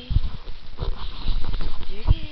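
Scottish terriers scuffling in play at close range: irregular soft thumps and rustling.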